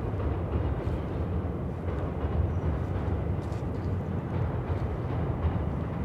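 Steady low rumble of a passing commuter train on the transit line beside the cemetery.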